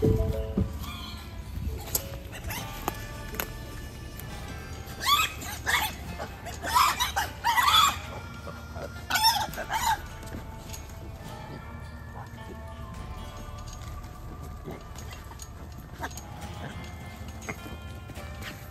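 Feral hogs trapped in a Pig Brig net trap squealing, with a few loud squealing calls between about five and ten seconds in.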